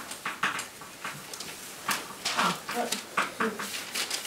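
Chalk writing on a blackboard: a quick series of sharp taps and scratches as words are written, with a couple of short squeak-like or murmured sounds partway through.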